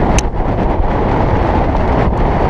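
Loud, steady wind buffeting the microphone of a jockey's GoPro on a galloping racehorse, with a brief sharp click about a fifth of a second in.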